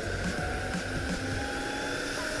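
Meepo Flow electric skateboard riding fast on asphalt: a steady rolling hiss from the wheels with a faint motor whine that rises slightly in pitch as it speeds up.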